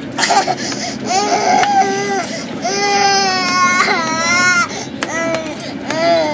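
A toddler crying in about four drawn-out wails, the longest near the middle lasting about two seconds and bending down in pitch at its end.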